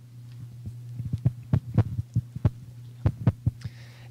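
Steady low electrical hum from the sound system, with a run of irregular soft thumps and knocks from a handheld microphone being handled. The thumps begin about half a second in and stop shortly before the end.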